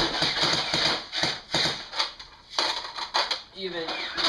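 A rapid run of clicks and pops from toy guns being fired, thinning to single shots about half a second apart. A voice sounds near the end.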